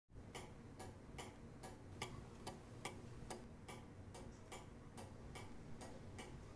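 A clock ticking faintly and steadily, about two and a half ticks a second.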